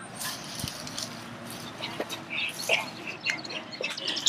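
Dry grass and dead leaves rustling and crackling as hands scrabble through them on the ground, a steady scratchy rustle with scattered small crackles and a few short faint high sounds.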